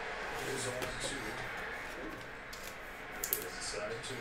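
Quiet handling of trading cards: faint rustle of cards sliding against each other in the hands, with a small click a little after three seconds.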